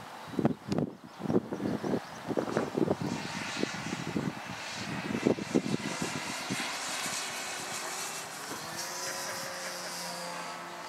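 Engine and propeller of a radio-control aerobatic model airplane in flight, with its pitch shifting near the end as the throttle changes. Irregular low thumps through the first half are the loudest sounds.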